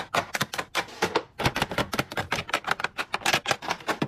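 Rapid clicking and clacking of makeup cases and tubes being set down and tapped against a clear acrylic organizer, a few taps at first, then quickening to a dense run of many clicks a second after about a second and a half.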